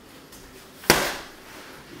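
A single sharp smack about a second in, with a short fading tail: a bare-foot round kick striking a free-standing Century heavy bag.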